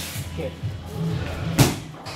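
A round kick striking a pair of Thai pads: one sharp smack about three-quarters of the way through.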